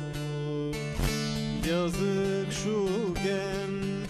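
A man singing a Turkish folk song (türkü) with wavering, ornamented vocal lines, accompanied by a bağlama (long-necked saz) plucked and strummed over steady low drone notes. A sharper strum lands about a second in.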